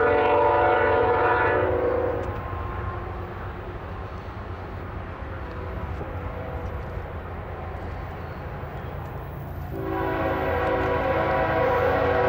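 Diesel freight locomotive's multi-chime air horn sounding a long blast that ends about two seconds in, then sounding again from about ten seconds in, over the steady low rumble of a passing freight train. The second blast comes as the locomotive approaches a grade crossing with its gates down.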